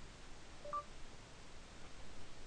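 A short two-tone electronic beep from the Android phone's voice-input prompt, about two-thirds of a second in, signalling that speech recognition has started listening.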